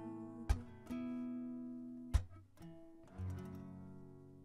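Acoustic guitar playing the final chords of a song: a few sharp strummed chords ringing and fading, then a last chord about three seconds in that is left to ring out.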